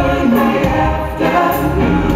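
Live pop music: a male vocal harmony group singing in close harmony over a band of drums, keyboards and electric guitar, with cymbal strokes every second or so.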